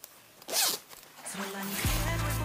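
A zipper on a brown canvas bag pulled open in one quick stroke about half a second in. Background music comes in near the end.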